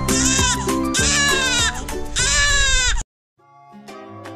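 Newborn baby crying, three rising-and-falling wails over background music. The sound cuts off abruptly about three seconds in, and soft guitar music fades in.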